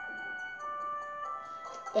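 Background music from a children's story app: a slow, soft melody of held notes that change about every half second.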